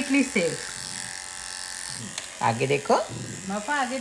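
Electric pet hair trimmer with a guide comb buzzing steadily as it clips a Shih Tzu's coat.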